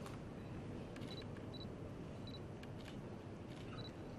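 Faint, scattered camera shutter clicks with a few short high beeps, over low hall background noise.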